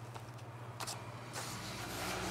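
Faint rustling and light clicks of paper sheets and zines being handled in a plastic storage bin, over a steady low hum; a low rumble builds in the second half.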